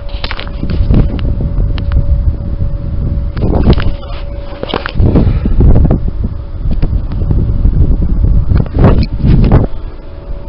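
Wind buffeting a handheld camera's microphone, a heavy uneven rumble, with handling knocks and rustle as the camera is carried along while walking. A faint steady whine runs underneath.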